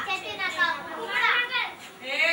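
Schoolchildren's voices answering a question, several speaking at once.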